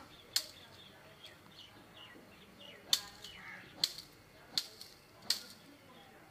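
Five sharp snaps, irregularly spaced, loudest about three seconds in, with small birds chirping in short falling notes between them.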